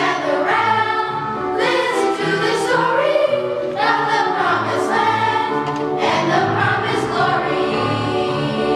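Middle school choir singing together, many young voices holding and sliding between notes in long phrases.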